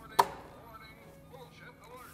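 A hand slapping down hard on a novelty push button on a tabletop: one sharp, violent smack a fraction of a second in, then only faint sounds.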